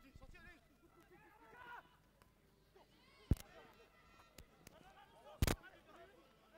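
Faint, scattered shouts of players and spectators at a rugby match, with two sharp knocks about three and five and a half seconds in.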